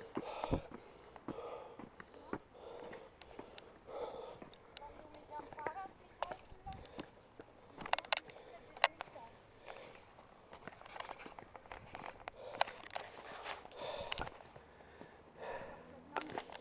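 A person's breathing close to the microphone, soft swells every second or so, with clothing rubbing against the microphone and scattered sharp clicks.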